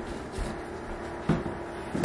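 Two light knocks of plastic supplement tubs being picked up off a kitchen counter and put away, about a second apart, the second one clearer, over a faint steady hum.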